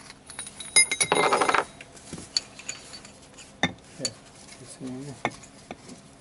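Steel differential parts, the ring gear, carrier and bearing, being handled: a sharp click, then a short loud metallic scraping rattle about a second in, followed by scattered single clinks.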